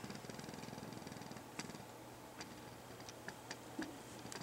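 Quiet room with faint rustling for about a second and a half, then a few scattered soft clicks: a person moving about, clothing brushing and light footfalls.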